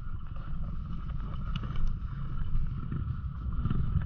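Dirt bike engine running as the bike rides down a rutted dirt trail, heard from on board with a steady low rumble and some wind on the microphone.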